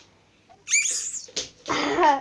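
Fart putty pressed down into its plastic tub with the fingers, pushing air out: a short high squeak about a second in, then a longer, louder buzzy fart noise near the end.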